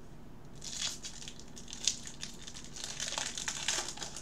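Foil wrapper of a Bowman Draft baseball card pack crinkling as it is picked up and pulled open by gloved hands. The crinkling starts about half a second in and goes on irregularly, with one sharp crackle near the two-second mark.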